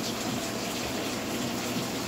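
A steady rushing noise with no voice in it, even in level throughout.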